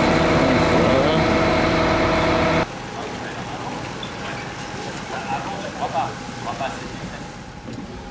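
A motor engine running steadily and loudly, with a voice over it, cutting off abruptly about two and a half seconds in. After that, quieter street background with faint voices.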